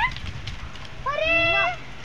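A single high, drawn-out meow-like call about a second in, rising and then falling in pitch.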